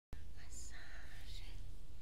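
Soft whispering from a person, a few short hushed sounds in the first second and a half, over a steady low hum.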